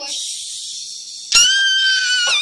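A breathy, hissing sound, then about a second and a half in, a child's high-pitched squeal that starts suddenly and is held steady.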